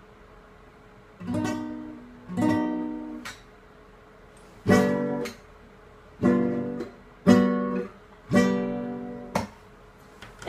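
Acoustic guitar strummed: after about a second of quiet, six single chords are struck at slow, uneven intervals, each left to ring and fade.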